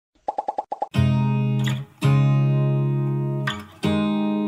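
Background music: a quick run of about six short plucked notes, then acoustic guitar chords that ring out and fade, struck about a second in, near two seconds and again just before the end.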